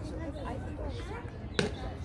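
Voices talking in the background, with a single sharp knock about one and a half seconds in.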